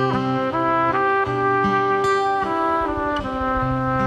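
Live band playing an instrumental passage: sustained chords from wind instruments, with brass prominent, changing every second or so under a steady low note.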